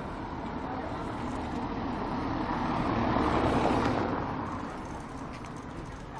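A car driving past on the street, growing louder to a peak a little past the middle and then fading away.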